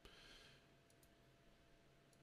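Near silence: room tone with a couple of faint computer mouse clicks about a second in.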